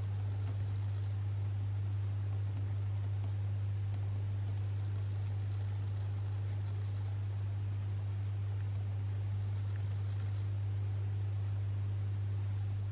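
A steady, unchanging low-pitched hum over a faint hiss.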